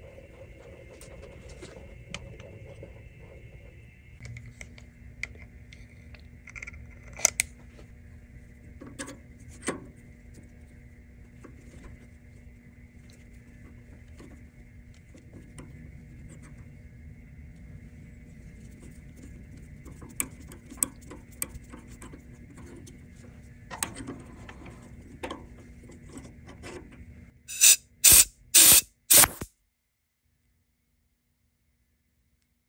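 Hand tapping an 8-32 thread with a tap in a knurled holder: faint clicks and ticks of the tap and holder over a steady low shop hum. Near the end there are four short, loud hissing bursts.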